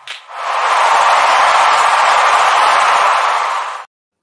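Segment-transition sound effect: a steady rush of noise that swells in over the first half second, then cuts off suddenly just before the end.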